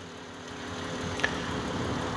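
A low, steady mechanical hum that grows slightly louder, with a faint click about a second in.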